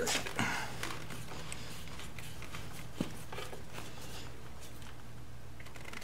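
Faint handling clicks of a screwdriver driving a small screw-type snap stud into a motorcycle's rear fender, with one sharper click about three seconds in, over a steady low hum.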